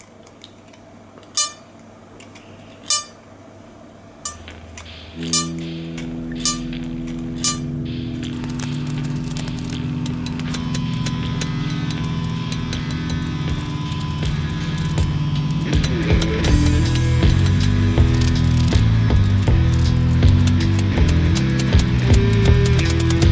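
Brass reeds of a Hohner Sonny Boy harmonica plucked one at a time with a small screwdriver, giving short ringing plinks about a second apart. They are being tested to hear whether they ring again after being worked loose. From about five seconds in, background music fades in and grows louder, with a steady beat in the second half, and covers everything.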